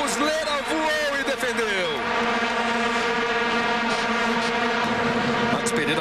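Massed vuvuzela horns in a stadium crowd, droning together on one steady pitch.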